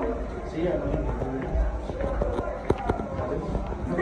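Footsteps on a hard cellar floor, heard as short sharp clicks mostly in the second half, with people's voices talking in the background.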